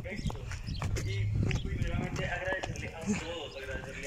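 Wind buffeting the phone's microphone in gusts, with voices talking underneath.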